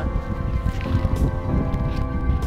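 Background music with steady held tones, over a low wind rumble on the microphone.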